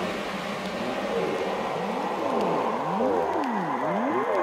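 Electronic dance music breakdown: the heavy bass hits stop, leaving a wash of reverb. About halfway through, a synth tone starts sweeping up and down in pitch, roughly twice a second.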